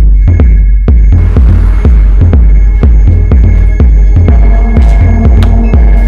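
Loud electronic dance music with a heavy, throbbing bass beat, about two to three beats a second.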